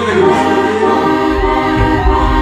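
Live band music played over a stage sound system: a held chord with voices singing together, and a strong bass coming in about halfway through.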